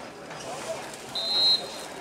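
Referee's whistle blown once: a short, steady, high note lasting about half a second, heard over faint shouting from the field.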